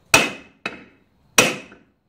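Brass hammer lightly tapping a steel driver that presses a crankshaft bearing into a Stihl 028 chainsaw's magnesium crankcase: two ringing metallic strikes about a second and a quarter apart, with a lighter tap between them. The bearing is still going in and has not yet seated.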